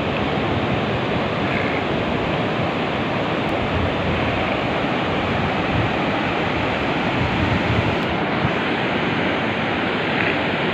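Steady ocean surf breaking on the beach, with wind buffeting the microphone.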